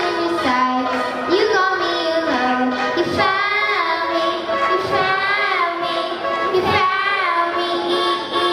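Young girls singing a pop song into microphones, backed by a live band of electric guitars, keyboard and drums, with drum hits falling a few times through the second half.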